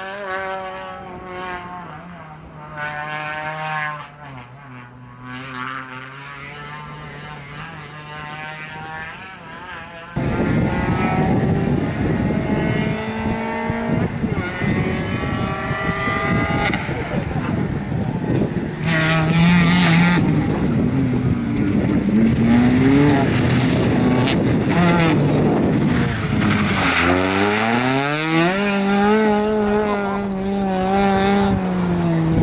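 Peugeot 206 rally car engine at speed, fading as the car pulls away, its pitch sinking. After an abrupt cut it comes back loud and close, with revs rising and falling through gear changes. Near the end the revs drop and then climb steeply as the car runs off the road into a ploughed field, its wheels throwing up soil.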